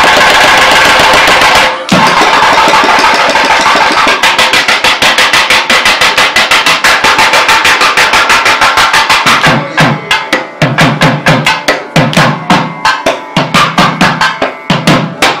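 Two thavil barrel drums played together: a dense roll with a brief break about two seconds in, then fast, even strokes of about eight a second. About ten seconds in, the playing turns into a spaced rhythmic pattern with deep bass strokes.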